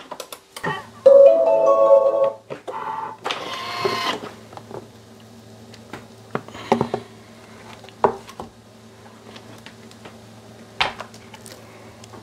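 A short run of stepped electronic tones, then a steady low hum with scattered light clicks and knocks as the Thermomix's Varoma steamer and lid are lifted and handled.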